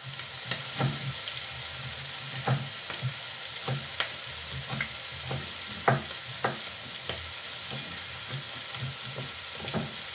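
Minced meat sizzling steadily in a frying pan on a gas stove, with a knife chopping red onion on a wooden board in irregular sharp knocks.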